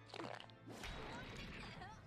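Faint cartoon soundtrack of an explosion: a short hit, then a low rumbling blast that fades away, with background music underneath.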